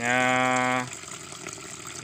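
A man's drawn-out hesitation sound, one vowel held on a steady pitch for nearly a second, over water from a tap running into a plastic backpack sprayer tank.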